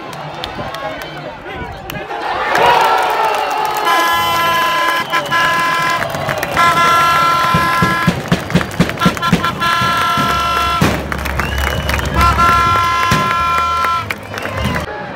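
Football stadium crowd whose cheer swells about two seconds in, followed by air horns blown in long, steady blasts, several times over with short breaks.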